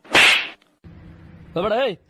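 A loud slap landing on a man, a sharp swishing hit right at the start. Near the end comes a short vocal cry that rises and then falls in pitch.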